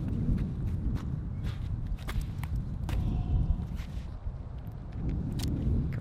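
Footsteps on a paved path, with heavy wind noise on the microphone throughout.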